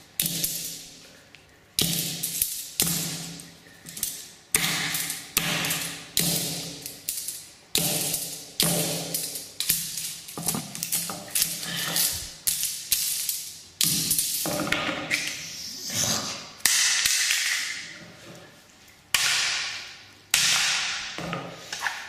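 A sledgehammer repeatedly smashing Koss Porta Pro headphones against a concrete floor: sharp, ringing blows about one to two a second, with a short pause late on. The headphones are proving hard to break.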